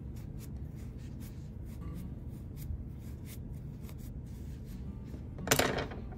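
Faint rustling and scratching of polyester fiberfill being poked into a crocheted amigurumi with the blunt end of a wooden chopstick, over a low steady hum. A short louder rustle comes near the end.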